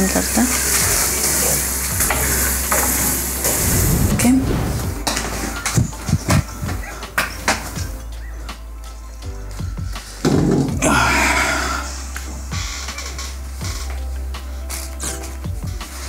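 Hot oil sizzling as fried puffed potato slices are ladled out, followed by a run of clicks and knocks from dishes and utensils, with background music.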